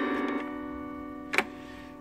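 Tokai Chroma Harp autoharp chord strummed just before, ringing and fading, its lower notes dropping out early on, with one sharp click about one and a half seconds in. The instrument is a string short and not yet retuned.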